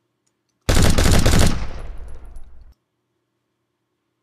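Machine-gun burst sound effect: rapid automatic gunfire starting just under a second in, fading away with an echoing tail that cuts off suddenly about a second later.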